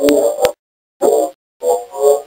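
Short, indistinct, voice-like bursts from a supposed EVP recording, played back in cut pieces with dead silence between them and clicks at the cuts.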